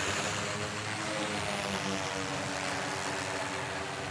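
Steady, even drone of distant heavy mining machinery running, with a few constant low tones.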